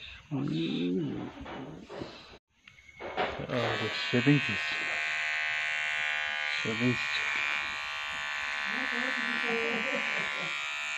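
Handheld electric hair trimmer buzzing steadily as it is run over chin and neck stubble, starting about three seconds in. Short bits of a man's voice come before it and over it.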